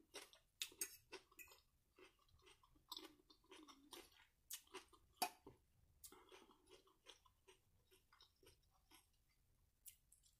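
Faint close-up chewing of a mouthful of salad greens, with small crisp crunches and wet mouth sounds, and scattered sharp clicks, the loudest about five seconds in.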